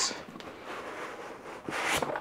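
Hands rubbing and sliding over the cardboard and foam packing inside a shipping box, with a louder scraping rustle near the end.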